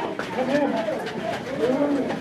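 Several recruits' voices overlapping in short, rising-and-falling cries in a small echoing cinder-block room, with no clear words.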